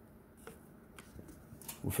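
A few faint, short clicks and handling noise as a DC barrel power plug is worked against the socket and plastic case of a Godiag ECU adapter box. A man's voice starts near the end.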